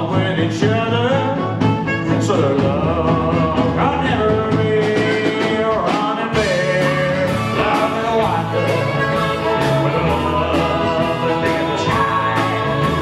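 Live rock and roll band: a male lead vocal over a steady drum beat, electric guitars and bass.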